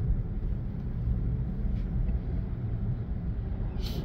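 Steady low road and engine rumble heard inside a car cabin while driving at highway speed, with a short hiss near the end.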